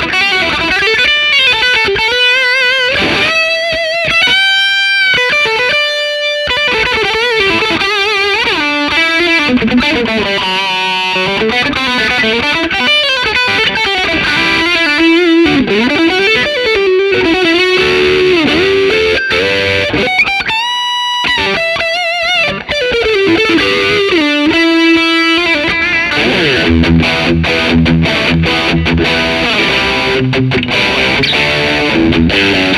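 Fender Japan Heritage 60s Stratocaster electric guitar played through distortion: a lead line of sustained notes with string bends and vibrato. In the last few seconds it switches to a rhythm riff of quickly repeated low notes.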